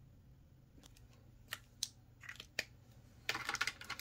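Faint tabletop handling noise from a marker and long acrylic nails on a paper chart: a few sharp separate clicks, then a quick flurry of clicks and rustle near the end.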